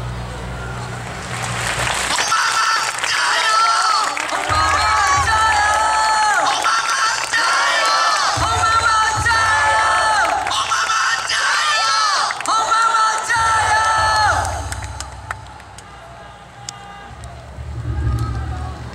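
Singing in long held notes that rise into each hold, starting about two seconds in and fading out about fifteen seconds in, heard across a large outdoor crowd.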